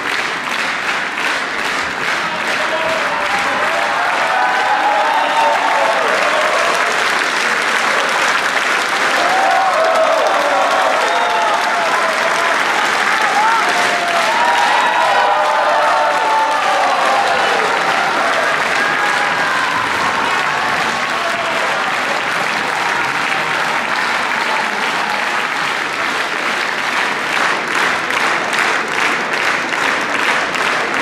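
A large theatre audience applauding: dense, sustained clapping with voices calling out over it.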